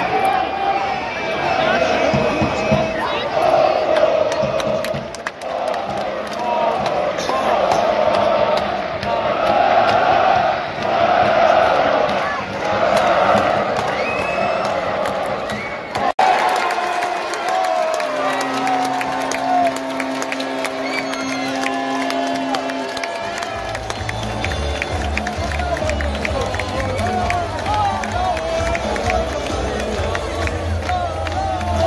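Large football stadium crowd chanting in rhythmic waves. After a cut, music plays over the stadium loudspeakers: held tones first, then a steady bass beat, with crowd voices continuing over it.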